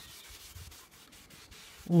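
Faint rubbing of a cloth wiping teak oil into the weathered wood of a teak garden bench, a soft, even scuffing.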